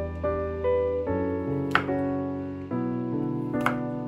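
Gentle piano background music. Two sharp knocks of a chef's knife cutting through button mushrooms onto a wooden cutting board, one a little under two seconds in and one near the end.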